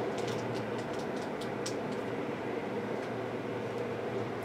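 Steady room hum, with a few faint ticks from trading cards being handled and shuffled in the hands during the first second or two.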